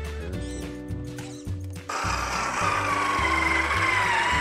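Music for about two seconds, then a whine from a radio-controlled scale crawler's electric motor and gearbox comes in suddenly and louder over it as the truck drives close past.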